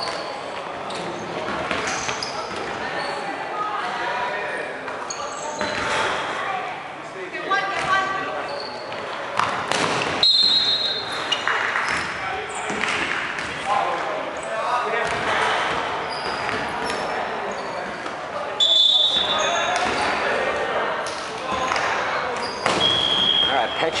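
Dodgeball play in a sports hall: players shouting and calling to each other while the balls thud off bodies and bounce on the wooden court, with the hall's echo. A few sharp impacts stand out, one near the middle and another a little later.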